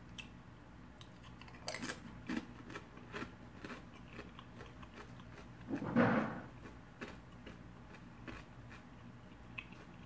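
Close-up crunching and chewing of white corn tortilla chips dipped in cheese dip, heard as scattered short crisp crunches. About six seconds in there is one louder breathy vocal sound.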